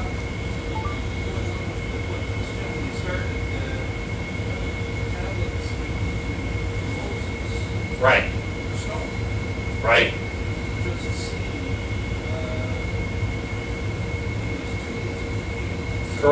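Steady low machinery rumble with a thin, high steady hum, heard in a lecture room aboard a cruise ship. Faint off-microphone speech of an audience member asking a question runs under it, with two short louder sounds about eight and ten seconds in.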